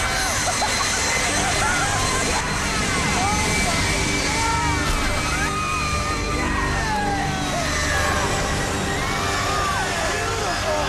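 Several people shouting and whooping in excitement, over background music and a steady noise underneath.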